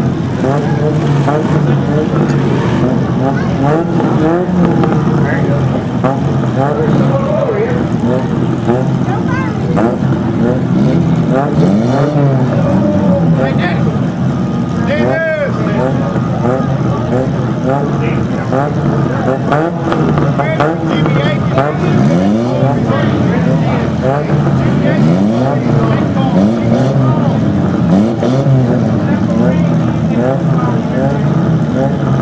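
Several demolition derby cars' engines running together at idle, with repeated revs that rise and fall throughout.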